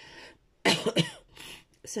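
A person coughing: two sharp coughs close together about two-thirds of a second in, then a softer one.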